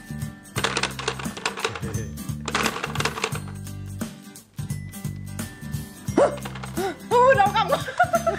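Plastic clattering of a two-player hammer-fighting toy, its buttons jabbed rapidly in bursts, over background music with a steady stepping bass line. Laughter comes in near the end.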